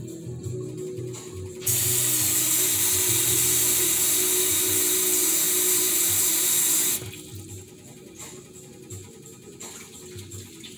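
Kitchen tap running hard for about five seconds as a measuring cup is refilled with water for the gumbo pot, turned on sharply about two seconds in and shut off just as abruptly.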